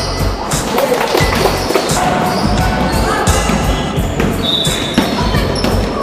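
A basketball bouncing on a hardwood gym floor during play, with repeated thuds, over background music.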